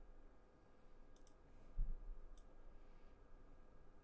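A few faint computer mouse clicks, two in quick succession just past a second in and another a little later, with a soft low thump between them.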